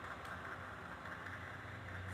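Steady, low-level background noise of an indoor sports hall over a constant low hum, with no single event standing out.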